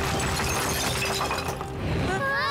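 Sound effect of a wall breaking apart: a crash with rubble and debris rattling down over a low rumble, dying away near the end.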